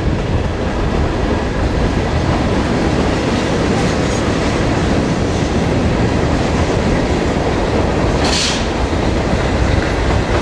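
Freight train passing, its wheels clacking over the rails, with two trailing Norfolk Southern diesel locomotives running. The sound stays loud and steady, with a brief high-pitched burst about eight seconds in.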